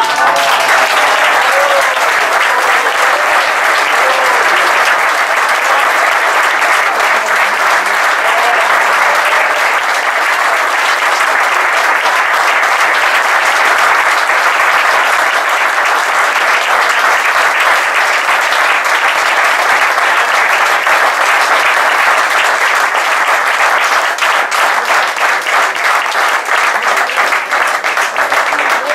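Audience applauding, a steady wash of clapping that thins out to separate, individual claps near the end.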